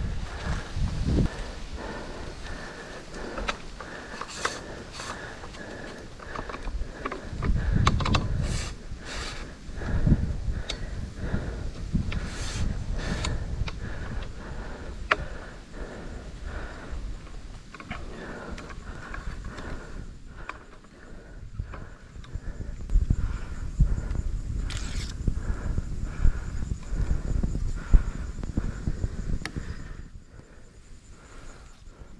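Slow, careful footsteps through dry leaf litter and grass, with irregular rustles, scrapes and clicks from gear and a camera rig being handled and set down. Low rumbles of handling noise come and go, over a faint steady insect drone.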